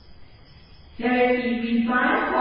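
A voice chanting or intoning on a held, level pitch, coming in about a second in after a near-quiet pause.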